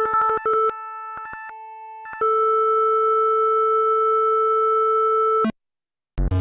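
Studiologic Sledge virtual-analog synthesizer playing: a quick run of short repeated notes, then held notes that step in pitch. About two seconds in, a single steady note is held for about three seconds and cuts off abruptly near the end.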